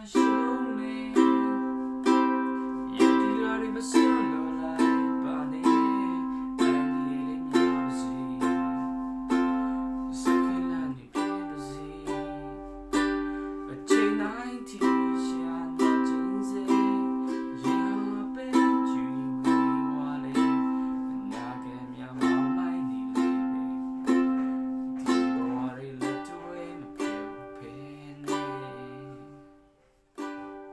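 Ukulele strummed in steady chords, a strong stroke about once a second, with the last chord fading out near the end.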